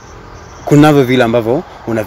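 A man's voice speaking for about a second, starting near the middle, with a faint high insect trill, typical of a cricket, at the start.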